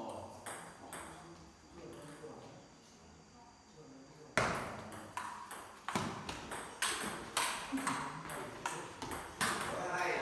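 Table tennis rally: the celluloid ball clicking sharply off bats and table about twice a second, starting about four seconds in, with low voices talking before it.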